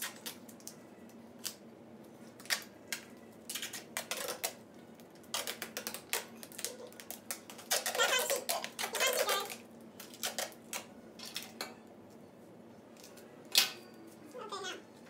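Silver duct tape pulled off the roll and torn in a string of short, crackling rips, with a longer, louder stretch of pulling about eight to nine seconds in.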